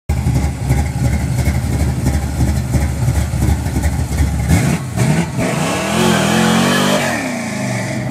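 1964 Mercury Cyclone's 363-cubic-inch V8 idling with an uneven beat, then revved hard about four and a half seconds in as the rear tires spin in a burnout, a tire hiss over the climbing engine note. The revs fall away about a second before the end.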